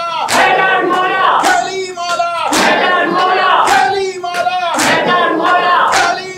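A group of men chanting a mourning chant loudly in unison, with a sharp slap about once a second in time with it: hands beating on chests (matam).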